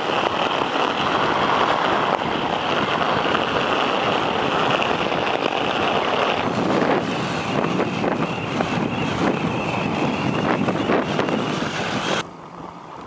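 Ice skate blades gliding fast over lake ice while kite-pulled, with wind on the microphone: a steady rushing scrape with a high ringing band that shifts about halfway through, and scattered short clicks in the second half.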